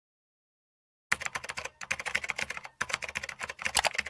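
Computer keyboard typing sound effect: rapid keystrokes starting about a second in, with a brief pause near the middle, as the name and password are entered in a login screen.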